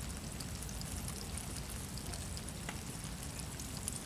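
Steady low rumble and hiss of outdoor background noise, with faint scattered ticks and crackles.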